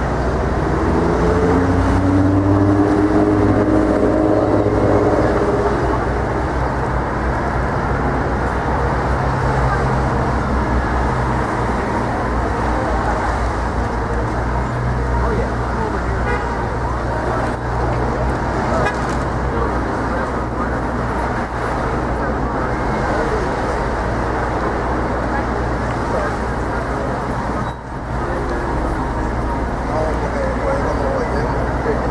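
Busy city street traffic: a steady wash of cars and buses passing, with a sustained pitched tone over the first five seconds or so and the voices of people nearby.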